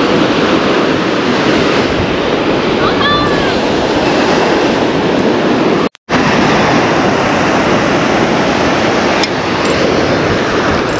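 Ocean surf breaking on the beach, a steady loud rush with wind on the microphone. The sound cuts out for a split second about six seconds in.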